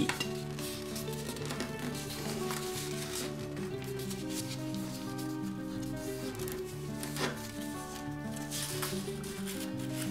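Background music of steady held notes, over the light rustling and crinkling of a sheet of printer paper being folded and creased by hand.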